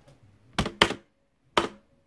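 Three short sharp clicks: two close together about half a second in, then a third about a second later.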